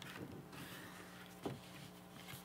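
Faint rustling and scraping of a cardboard LP jacket being slid out of its card slipcase, with a brief soft knock about one and a half seconds in as it is set down, over a low steady hum.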